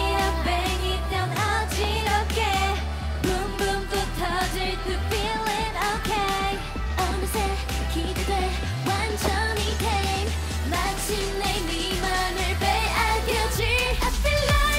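Funky K-pop dance track sung by a female group, with a heavy bass line and a steady beat; the bass drops out briefly a few times.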